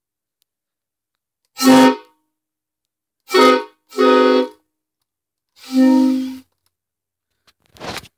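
Homemade PVC replica of a Nathan K5LLA five-chime train horn sounded in four short blasts, each a chord of several tones. The last blast is longer and breathier, and fades away.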